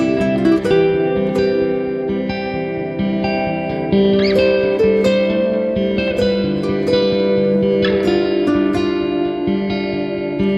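Background guitar music: a continuous run of plucked notes and chords.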